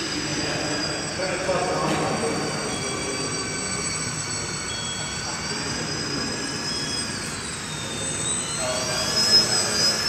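High-pitched whine of an Electrifly VFO RC model plane's electric motor and propeller in flight, its pitch wavering with the throttle, dropping about seven seconds in and climbing again near the end.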